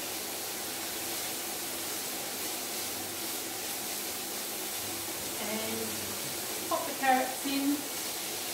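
Finely chopped bacon and onion frying in a pan, a steady sizzling hiss.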